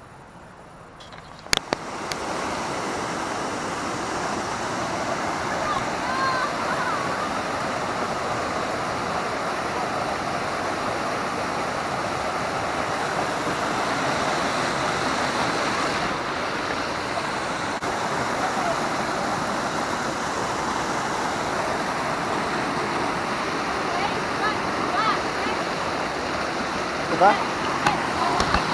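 Mountain stream rushing over boulders in a small cascade, a steady rush of water that sets in suddenly about two seconds in, after a click.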